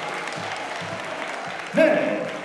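Audience applause fading slowly. Near the end a voice on the microphone starts speaking over it.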